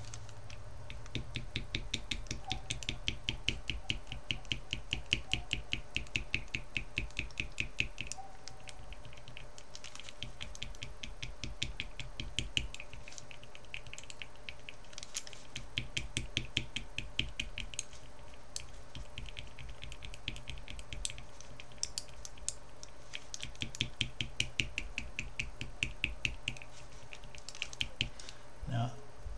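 A stirring stick clicking and scraping against the inside of a small glass jar of Tamiya metallic silver paint in rapid runs of several strokes a second, with short pauses. It is working the pigment that has settled into globs at the bottom back into the paint.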